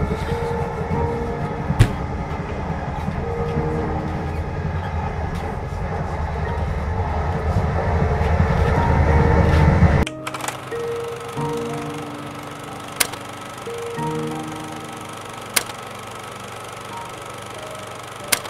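Film soundtrack music of long sustained notes over a low rumble that swells louder and cuts off abruptly about ten seconds in. Softer sustained music follows, with a few sharp clicks.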